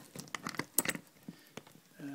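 Quick, irregular small plastic clicks of a hard-shell suitcase's combination-lock dials being turned and worked by finger, most of them in the first second; the lock is jammed shut and does not release.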